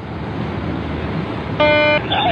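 Steady rumble of engine and wind noise, then about a second and a half in a loud, steady horn blast starts and holds.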